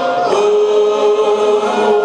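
A cappella gospel singing by a church congregation. About a third of a second in, the voices settle onto one long held note.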